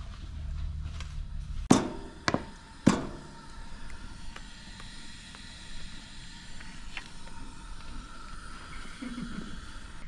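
Three sharp knocks about half a second apart, each with a short ringing after it, over a low steady background.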